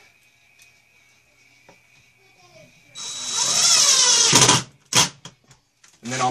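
Cordless drill driving a number 8 pan-head sheet metal screw through a steel shelf bracket into a particle board shelf. The motor whine starts about halfway through, runs for about a second and a half, wavering in pitch as the screw goes in. A single sharp knock follows.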